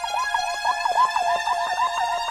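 Trance music: a synthesizer line that swoops up and down in pitch several times a second, siren-like, over held high tones.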